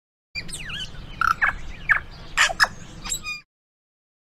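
Recorded birdsong: a rapid run of chirps and whistles with quick falling glides over a low rumble. It starts suddenly just after the start and cuts off abruptly after about three seconds.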